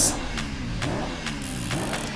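Sound effects from an action-film trailer played back: a low rumble with some gliding tones and a few sharp ticks.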